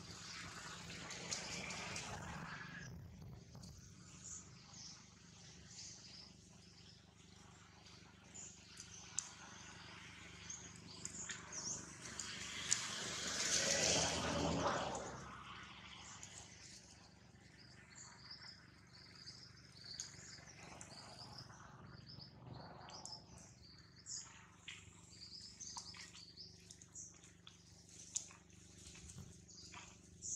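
Small birds chirping in the background, in many short high calls through the second half, over outdoor ambience with a louder rushing swell of noise about halfway through.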